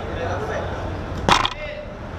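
One sharp smack of a thrown dodgeball striking, a little past halfway, over shouts and chatter from players and spectators.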